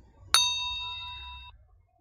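A single bright electronic notification ding from a computer. It rings as several clear steady tones that fade slightly and then cut off suddenly after about a second.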